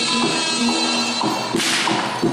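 A single whip crack about one and a half seconds in, over the ensemble's music of steady held tones with a drum beat.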